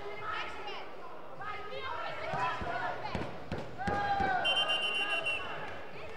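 Thuds of wrestlers' bodies on the mat and voices calling out, then near the end a referee's whistle trills for about a second, stopping the bout's action.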